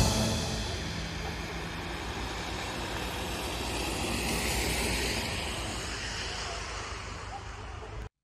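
Steady outdoor traffic rumble and hiss on a snowy road at night, swelling gently around the middle and fading toward the end. It opens under the tail of a music sting dying away in the first second.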